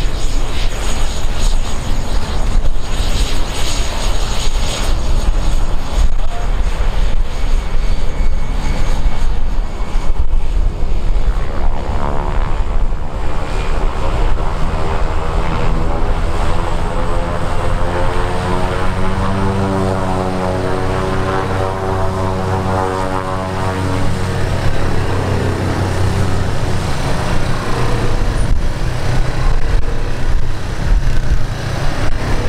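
Cessna 208 Caravan cargo plane's single PT6A turboprop engine and propeller running as it taxis past, a steady loud propeller drone. In the middle stretch the tone sweeps and shifts as the aircraft turns and moves by.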